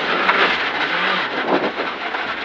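Rally car engine running at a steady note under load, with gravel and road noise rumbling through the body, heard from inside the cabin.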